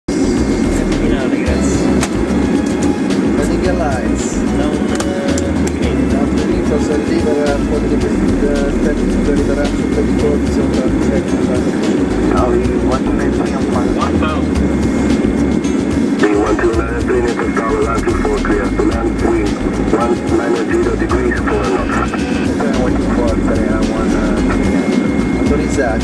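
Airliner cockpit noise on final approach: a steady, loud rush of engines and airflow with a low rumble, and indistinct voices over it.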